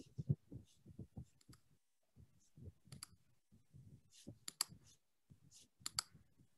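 Faint, irregular small clicks and taps, with a cluster of sharper clicks a little past the middle.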